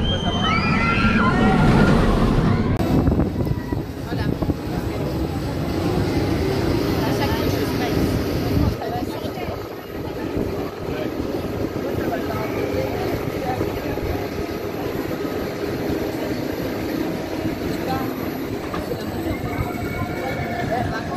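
Steel roller coaster train rushing past with riders screaming during the first few seconds, followed by a steady rumble of the ride mixed with distant voices.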